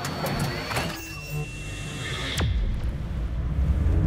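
Intro sound design for an animated logo: glitchy electronic clicks and high steady tones over music. A sharp hit comes about two and a half seconds in, and a low rumble builds after it.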